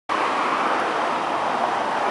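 Steady, even rushing noise outdoors, starting abruptly and holding level throughout, with no engine note or voice in it.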